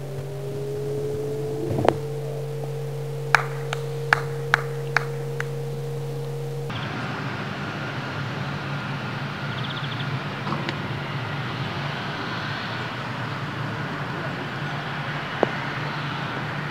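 Outdoor golf-course ambience. First a steady low engine-like drone with a slowly rising tone, one sharp knock and a quick run of six sharp clicks. Then, after an abrupt change, a steadier hiss with a single sharp click near the end.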